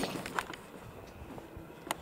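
Faint footsteps on a concrete sidewalk, with two short sharp clicks about a second and a half apart.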